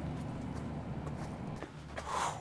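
A steady low background rumble, with a few faint clicks scattered through it.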